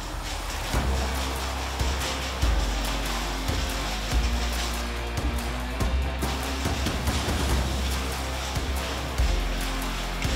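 Background music with a sustained bass line and repeated percussive hits.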